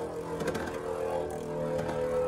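Two Beyblade Burst tops spinning in a plastic stadium: a steady whir with faint scraping ticks, as one top stays in the centre and the other circles the rim.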